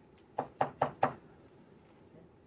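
Four quick knocks in a row, each a little under a quarter of a second after the last.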